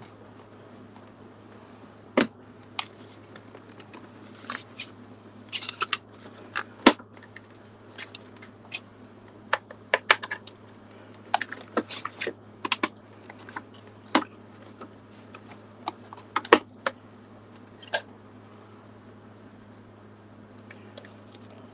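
Irregular light clicks and taps of a plastic electric die-cutting machine, metal dies and paper being handled and set down on a craft mat, over a steady low hum.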